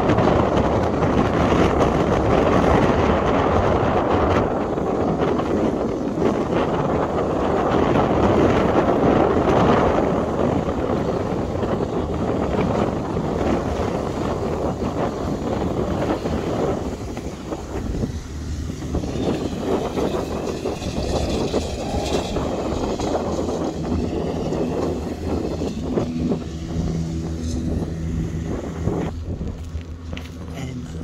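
Gusty wind buffeting the microphone on an open lakeshore, heaviest in the first half and easing after about seventeen seconds. A low steady hum comes in near the end.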